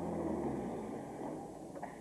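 Car engine running as an open convertible drives away, its low hum fading over the two seconds.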